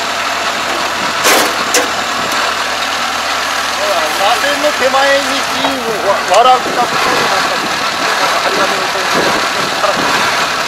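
Kubota ARN460 rice combine's diesel engine running steadily while the machine stands still, with two sharp clicks about a second and a half in.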